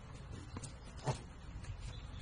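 Handling noise from a nylon tactical first-aid backpack: soft rustles and a few short knocks, the clearest about a second in, as its zipped compartment is folded open.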